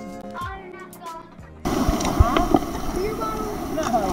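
Background music that cuts off suddenly about one and a half seconds in, giving way to the loud wash of surf and water around the camera, with voices in it.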